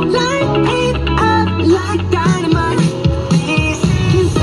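Live band music: an instrumental passage with melodic guitar lines over a bass line.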